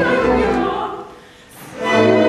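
Operatic singing with chorus and orchestra from a staged operetta. The music breaks off about a second in and comes back in just before the end.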